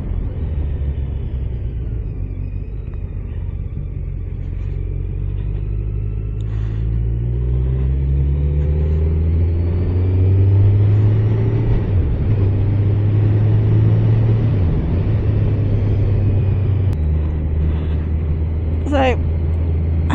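Kawasaki Z900's 948cc inline-four engine running on the road, with the revs climbing from about six seconds in as the bike picks up speed and getting louder. The revs then hold, with brief dips about twelve and fifteen seconds in.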